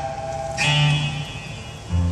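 Acoustic guitar accompaniment with no singing: a chord rings and fades, a new chord is struck about half a second in and dies away, and a low bass note is struck near the end.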